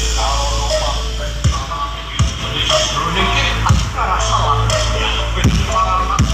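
Loud electronic dance music from a street sound-system truck's speaker stacks. It has a constant deep bass and repeated falling bass drops.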